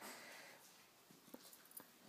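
Near silence: room tone, with a few faint ticks in the second half.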